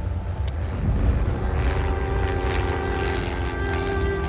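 Small single-engine Cessna's piston engine and propeller running steadily in flight, a low, even drone. Steady sustained tones join it about a second and a half in.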